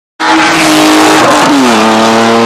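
Loud car engine over road and tyre noise. The engine note holds steady, then drops in pitch about one and a half seconds in.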